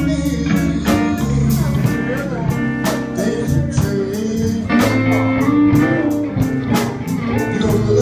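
Live blues music: guitar playing over a steady beat of drum hits about twice a second.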